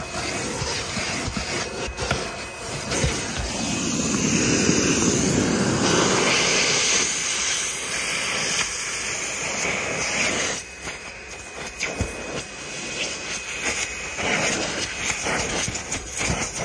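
Vacuum cleaner sucking through a ribbed hose worked over car floor carpet and a cloth seat: a steady rushing hiss that swells for a few seconds in the middle and shifts as the nozzle is pushed into the carpet and seat crease.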